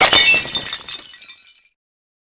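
Glass-shattering sound effect: one sudden smash followed by tinkling shards that die away over about a second and a half.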